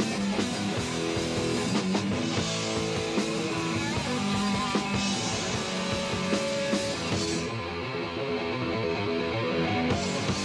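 Rock band playing an instrumental passage with distorted electric guitars and drums, no vocals. The high cymbal hiss stops about seven and a half seconds in, leaving guitars and drums.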